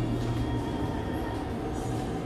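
Steady low hum of a hood-type hair processor (salon heat hood) running, with an even background hiss.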